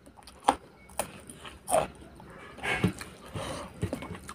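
Close-miked eating: a sharp crunch about half a second in as a fresh red chilli is bitten, then more bites and wet chewing and mouth sounds, with a longer rustling stretch near the end.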